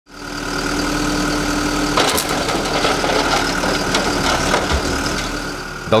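Borus backhoe loader's diesel engine running steadily, with a short knock about two seconds in.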